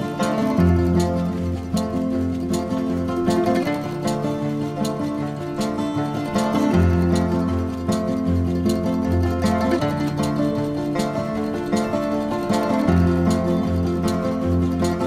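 Background instrumental music with a steady beat and a moving bass line.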